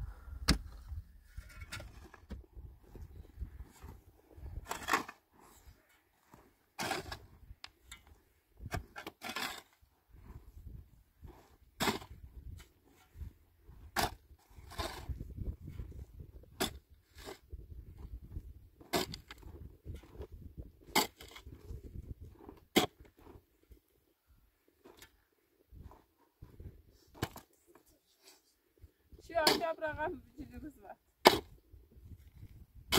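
Pickaxe and shovel digging into dry, stony earth: sharp strikes every second or two, with the scrape and fall of loosened soil between them.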